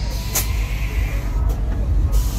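A Buick sedan rolling slowly past close by, with a heavy, steady low rumble. A couple of short bursts of hiss cut in, one early and one about one and a half seconds in.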